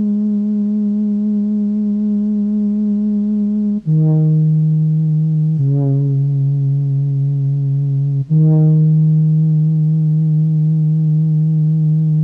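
Instrumental music: slow, long-held low notes with a rich, buzzy tone. The pitch drops a few times, with brief breaks between notes about four and eight seconds in.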